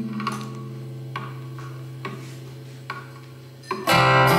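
Quiet passage of a live acoustic song: a low note held steady, with four soft clicks about a second apart keeping time. Acoustic guitar strumming comes back in loudly at the very end.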